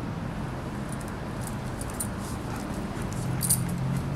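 Light metallic clinks of a dog's collar and leash hardware as a German Shepherd is held by the collar, a few around two seconds in and the loudest about three and a half seconds in, over a steady low hum.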